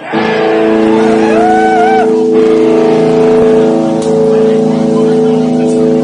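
Distorted electric guitar and bass strike a loud chord together and let it ring on steadily, opening a rock song. A higher note bends up and down over it between about one and two seconds in.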